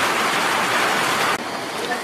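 Water rushing down a tube ride's conveyor ramp, a steady rush that drops off sharply about one and a half seconds in, leaving a quieter hush.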